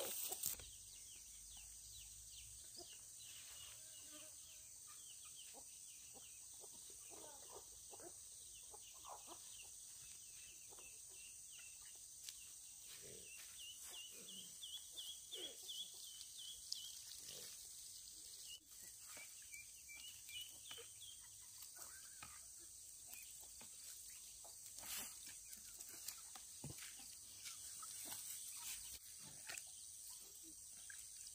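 Faint farmyard ambience: a steady high insect hiss, with runs of quick high chirps in the middle and scattered soft low clucks.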